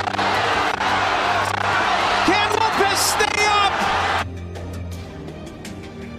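Boxing arena crowd roaring and cheering after a left hook lands, with a voice whooping over it about two to three seconds in and music underneath. About four seconds in the crowd cuts off suddenly, leaving quieter music with a steady beat.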